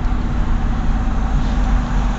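A vehicle's engine running steadily under road noise, heard from inside the cabin, with no revving.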